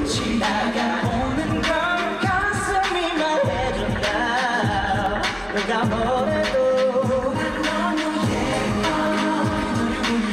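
Male pop vocal group singing live in Korean over an upbeat pop backing track with a steady beat.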